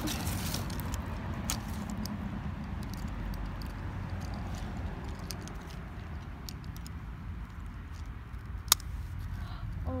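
Hands rummaging through a soft fabric tackle bag: rustling and small scattered clicks over a low steady rumble, with one sharp click near the end.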